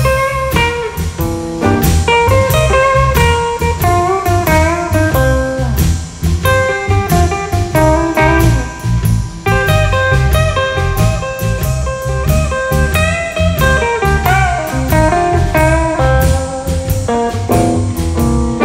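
Live blues band playing an instrumental passage: a lead electric guitar plays single-note lines with bent notes over a second electric guitar and a drum kit keeping a steady beat.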